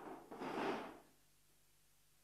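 A person's breathy sigh close to the microphone, fading out about a second in, followed by faint steady room hum.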